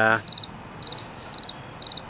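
Insect chirping in short, evenly spaced chirps about twice a second, each a high, thin pulse train.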